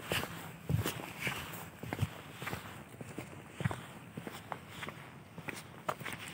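Footsteps of a person walking on an asphalt path, about one and a half steps a second, growing fainter in the second half.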